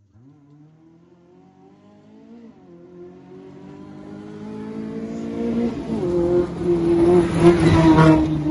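Maruti Gypsy rally car approaching at speed on a gravel stage, its engine note rising and growing steadily louder. The note dips briefly twice on the way in, and the car passes close near the end with a rush of tyre noise on gravel.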